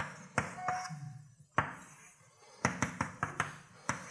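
Chalk tapping and knocking against a blackboard while drawing: a few sharp taps in the first two seconds, then a quicker run of taps a little before three seconds in.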